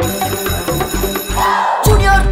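Cartoon electric school bell ringing, starting suddenly out of silence over a bright music track with a beat. Near the end, voices come in over the music.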